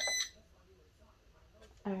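Heat press timer giving a short high electronic beep as its countdown reaches zero, stopped after a fraction of a second.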